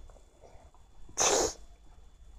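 A person's voice: one short, breathy, unpitched burst about a second in, between low, quiet handling noise.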